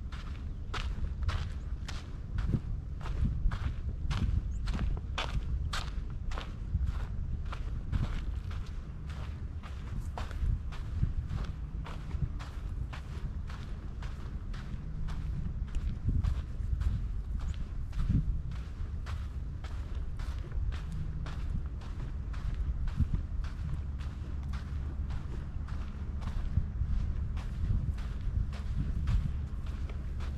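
Footsteps on a sandy dirt trail at a steady walking pace, about two steps a second, over a steady low rumble.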